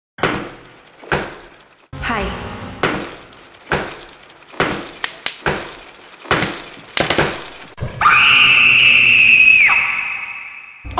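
A run of sharp impact hits, roughly one a second and quicker in the middle, each ringing away. Then a loud, high scream is held for nearly two seconds and falls off near the end.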